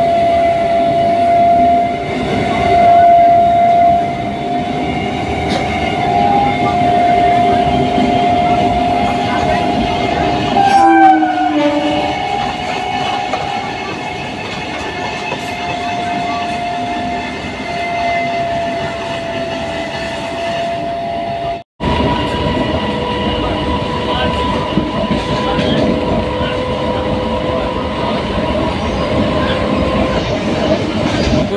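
Suburban electric train running at speed, heard from its open doorway: wheel and rail noise under a steady high whine. The whine glides down in pitch about eleven seconds in as another local train passes on the next track. The sound drops out for an instant about two-thirds through, then carries on with a higher whine.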